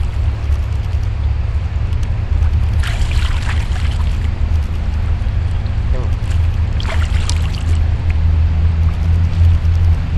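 River water rushing over rocks, a steady deep rumble with a hiss of spray above it.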